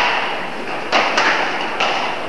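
Badminton rackets striking shuttlecocks during rallies, a few sharp hits echoing around a large sports hall, about a second in and again near the end.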